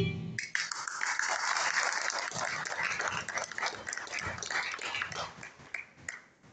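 Backing music cuts off about a third of a second in. Audience applause with cheering follows and dies away just before the end.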